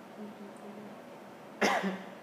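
A person coughs once, a short loud cough near the end, after a faint murmur of voice.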